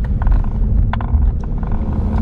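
Steady low rumble of a car, heard from inside the cabin, with a couple of faint clicks about a second in.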